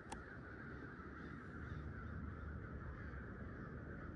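A large crowd of crows cawing continuously, their many calls merging into a steady din. A single sharp click sounds just after the start.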